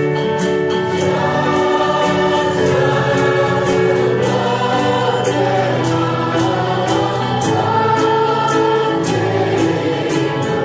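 Recorded choir singing Christian music with instrumental backing and a steady beat.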